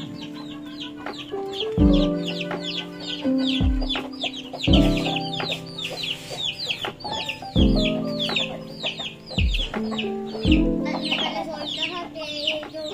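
Chicks peeping continuously in many quick, high, downward cheeps, over background music of held low chords with a bass thump every two to three seconds.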